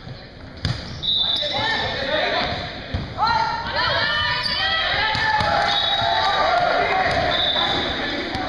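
Volleyball being hit during a rally in a school gym: two sharp smacks, one under a second in and one about three seconds in, ringing in the large hall. From about a second in, players and spectators are shouting over each other.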